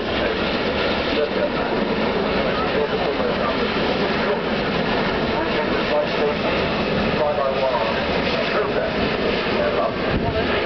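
Four-engined Airbus A380 flying low and slow overhead, its jet engines making a steady, even noise that does not rise or fall. Voices can be heard faintly underneath.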